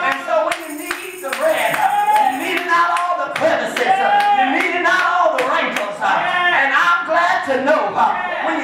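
Rhythmic hand clapping in a steady beat, over a man's voice preaching in a chanted, half-sung cadence.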